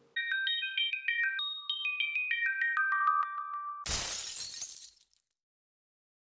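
Short closing music jingle: a quick run of bright, high notes for nearly four seconds, ending in a crash of noise that dies away within about a second.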